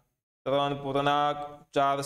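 A man's voice speaking slowly, with long, level-pitched held syllables, starting about half a second in.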